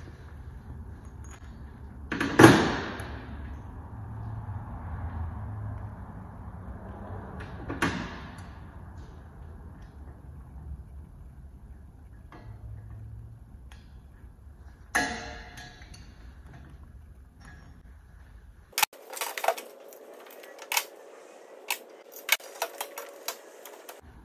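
Steel pliers pressing a steel E-clip onto a wheel axle: a few sharp metallic clicks and clanks, the loudest about two seconds in with a short ring, over a low hum. Near the end a quick run of small clicks follows over a faint steady tone.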